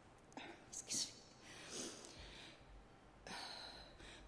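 A woman's breaths close to a podium microphone, several in a row with short pauses and no words, as she chokes up with emotion in the middle of a speech.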